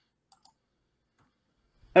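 Near silence with a single faint click about a third of a second in; a man's voice starts right at the end.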